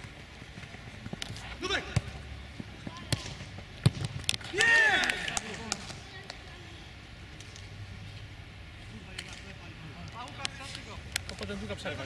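Football being kicked on an artificial-turf pitch, with a sharp knock every second or two, and players' shouts and calls. One loud shout comes about four and a half seconds in.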